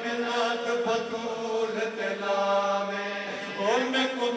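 A man's voice chanting a noha, a Punjabi/Urdu mourning lament, into a microphone. He holds long drawn-out notes, and his pitch rises in a glide near the end.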